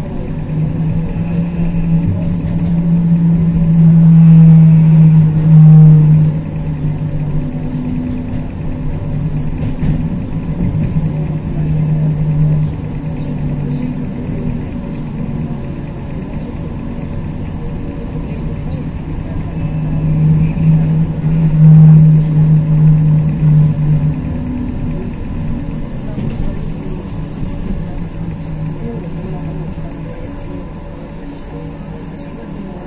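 Pesa Fokstrot 71-414 low-floor tram running along the line, heard from inside the passenger cabin: a steady low hum over rolling rumble. The hum grows loud twice, a few seconds in and again about two-thirds of the way through.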